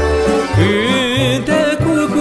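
Romanian folk orchestra playing an instrumental passage: violins carry a melody with wide vibrato over a repeating low bass beat.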